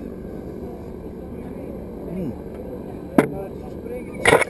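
A steady low outdoor rumble with a faint voice, and one sharp knock about three seconds in: a stemmed glass set down on a wooden picnic table.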